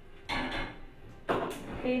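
Cookware being handled at the stove: a short scraping noise, then a sharp knock and a second one just after it.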